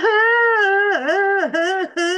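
A woman's voice imitating ugly crying: a loud, high-pitched wail in three drawn-out pulses, the pitch sagging and rising again between them.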